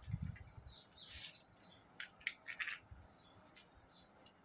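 Small birds chirping on and off, with a quick run of short chirps about two seconds in. A low rumble near the start.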